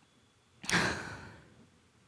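A woman's single audible sigh, close on a headset microphone: a sudden breath starting a little over half a second in and fading away over about a second.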